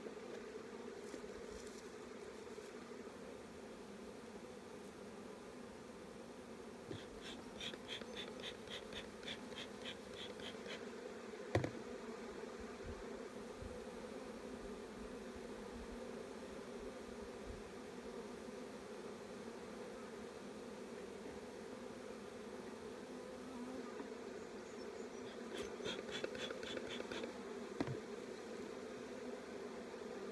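Honeybees buzzing in a steady hum around an open hive, with one sharp knock about the middle and two short runs of quick high ticks, about four a second.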